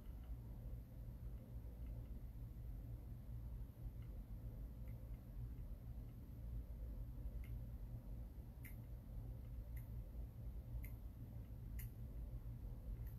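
Quiet room tone with a steady low hum and a few faint, scattered clicks in the second half.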